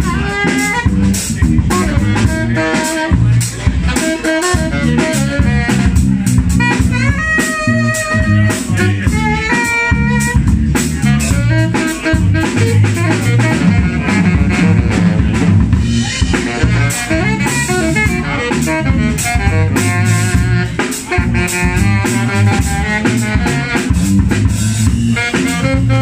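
Live jazz band playing: a saxophone plays melodic phrases over electric bass and a drum kit, with the drums keeping a busy beat throughout.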